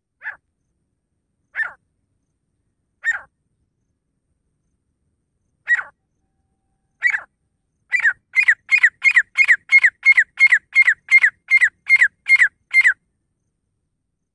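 Grey francolin calling: a few single, spaced calls, each a short falling note, then a fast run of about fourteen calls at roughly three a second that stops shortly before the end.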